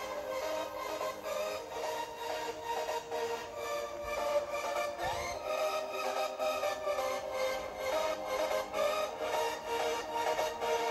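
Electronic dance music playing through the AAXA P400 mini projector's small built-in front-firing speakers, with a steady beat and a thin sound with little bass.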